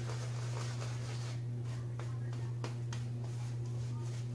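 Vie-Long Lord Randal silvertip badger shaving brush working lather onto a face, a few faint soft strokes over a steady low hum.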